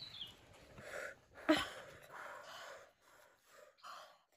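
Quiet, breathy exhalations through the mouth and a short grunted "uh" about one and a half seconds in, from a person reacting to the burn of an extremely hot chili chip.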